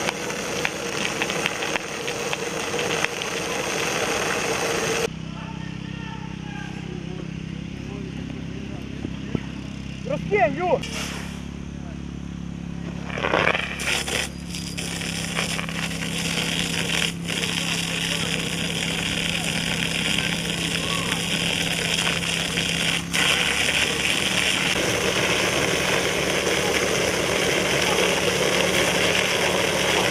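A fire engine's pump engine runs steadily under load while water jets hiss from fire hose nozzles.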